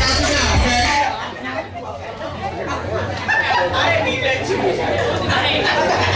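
Hip hop music with a heavy bass line stops about a second in, leaving a hall full of people chatting at once.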